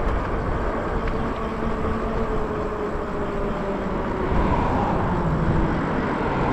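Wind and road noise from riding a Lyric Graffiti e-bike along a street at speed. A faint steady hum runs underneath and dips slightly in pitch about halfway through.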